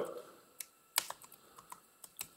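Computer keyboard being typed on: a few separate, irregular keystrokes, the sharpest about a second in.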